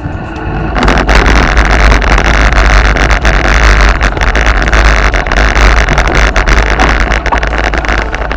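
Heavy wind rumble on a bike-mounted camera's microphone as a mountain bike rolls over gravel, with many small clicks and rattles from the tyres and bike. The noise is loud and steady.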